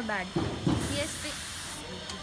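Perfume spray hissing once for about a second, over voices.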